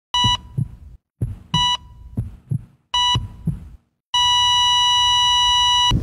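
Heart-monitor sound effect: heartbeat thumps with a short electronic beep, three times about a second and a half apart, then one long steady beep for about two seconds that cuts off suddenly.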